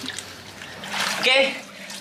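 Water splashing and trickling briefly, about a second in, as hands move in a small tub of water with floating plants; a man says "oke" over the end of it.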